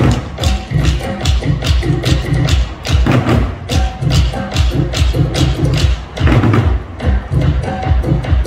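African drumming: drums struck in a fast, steady rhythm, with deep bass strokes recurring about once a second under sharper, higher hits.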